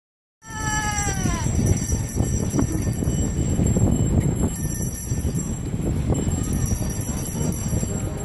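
Jingle bells on a carriage horse's harness ringing continuously over a steady low rumble, with a brief falling tone about a second in.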